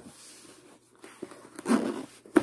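Handling noise from closing a zippered hard-shell knife case: faint rubbing of hands on its fabric-covered lid, then a louder, short muffled bump near the end.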